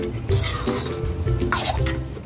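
Metal ladle stirring thick shrimp paste in a stainless steel wok, scraping and clinking against the pan, with a couple of louder scrapes. Background music plays underneath.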